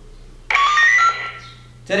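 Speech only: a short burst of voice about half a second in, then a man's voice starting again near the end.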